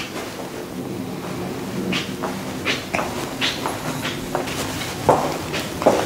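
Footsteps and light knocks as a person walks through an empty room, about a dozen irregular steps, over a faint steady hum.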